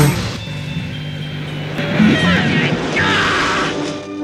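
Mixed film soundtrack: music with a low held note under voices and noisy sound effects, with a short noisy burst about three seconds in.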